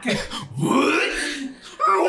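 Wordless vocal sounds and laughter from people at a table, one voice gliding up and down in pitch.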